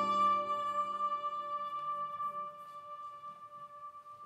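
Ambient electronic music from a mutantrumpet and effects: a held, steady chord that fades away. Its lower notes drop out in the first second, and a thin upper tone carries on quietly to the end.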